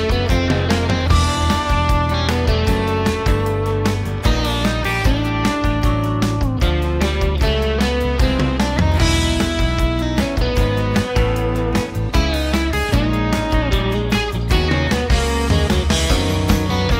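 Recorded band track with electric guitar over bass and drums. The guitars are Stratocasters, one tuned down a half step to E flat.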